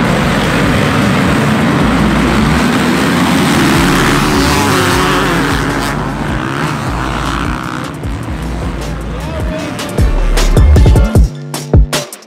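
A pack of motocross dirt bikes revving and pulling away together off the start line, many engines blending into one dense, wavering drone that fades after about eight seconds. Music with a beat comes in near the end.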